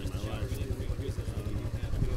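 An engine running steadily, a low even throb of about a dozen pulses a second, under faint background voices.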